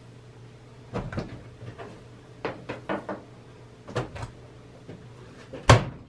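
Several light knocks and clunks as beaver pelts are loaded into an old electric dryer used as a fur drum. Just before the end comes the sharp clunk of the dryer door being shut, the loudest sound here.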